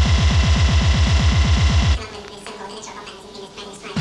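Hardcore techno from a rave DJ set: a very fast, loud pounding drum roll of about ten hits a second for two seconds. It cuts off abruptly to a quieter break with a held synth tone, and the roll comes back at the very end.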